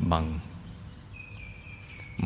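A man's calm voice speaking Thai, finishing a word in the first half-second, then pausing. In the pause there is a faint low hum, and in the second half a thin, steady high tone.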